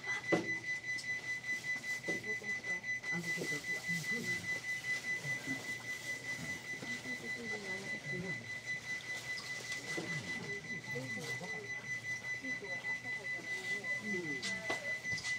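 Faint, indistinct voices of people talking, over a steady high-pitched electronic tone.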